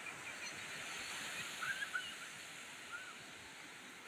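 Sea surf breaking and foam washing up a sandy beach, a steady hiss, with a few short high chirps over it around the middle.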